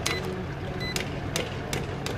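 Two short electronic beeps from a digital platform scale's keypad as its keys are pressed, over a steady run of sharp clicks at about three a second and a low hum.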